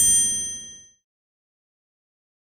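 A single bright bell-like ding from an animated logo sting. It strikes sharply and rings with several clear tones that fade out within about a second.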